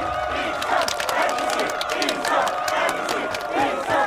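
A crowd cheering and chanting the Mandarin slogan 'Taiji department will win', many voices overlapping, with scattered claps.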